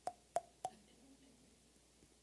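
Three quick hollow pops about a third of a second apart, made by a finger tapping the cheek with the mouth held open, each ringing briefly at the same pitch. They are a demonstration of percussion: the hollow, air-filled mouth resonates when tapped.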